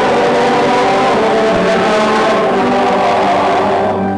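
Loud, continuous church hymn music, sung and played, at the turn from one verse to the next.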